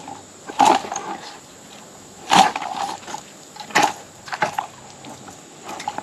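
Branches and twigs of a fallen tree cracking and rustling, four or five sharp snaps a second or so apart, as a fishing rod is jabbed and shaken in the brush to free a snagged lure.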